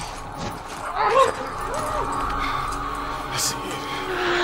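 Muffled moans from a woman gagged with tape, straining in labour, with two short wavering cries about one and two seconds in.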